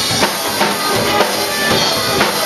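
A live band playing, with a drum kit keeping a steady beat of bass drum and snare hits under the other instruments.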